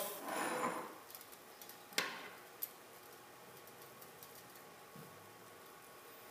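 Metal crucible tongs clinking: a sharp click with a short ring about two seconds in, a lighter one just after, and a faint one later. A brief soft hiss comes first.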